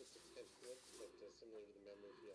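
Faint speech at a very low level, with no other sound standing out.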